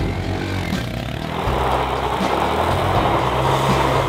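Honda Monkey 125's single-cylinder engine revving as its rear wheel spins on loose gravel. A dense hiss of spraying grit builds from about a second in.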